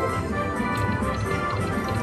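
Video slot machine's win celebration after its free-spins bonus: a bright musical jingle with light tapping coin sounds as the win meter counts up.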